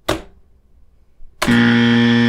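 A harsh, steady buzzer sound effect, the game-show 'wrong answer' kind, starting about one and a half seconds in and lasting about a second before cutting off sharply.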